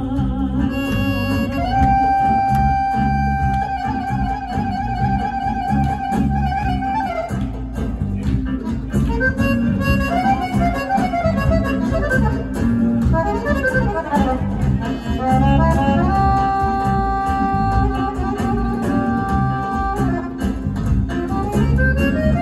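Live Balkan folk band playing an instrumental passage with the accordion prominent: long held notes, then quick running phrases in the middle, then held notes again, over a steady bass and rhythm section.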